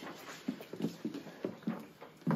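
Faint, irregular small knocks and rustles, about half a dozen, from a group of children shifting on their feet as one steps forward to the front.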